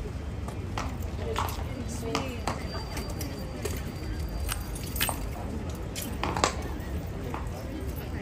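Scattered sharp clicks and clinks from a cavalry horse shifting on cobbles and moving its head in a metal bit and chain bridle, the loudest about five seconds in and again about a second and a half later, over a murmur of tourists' voices.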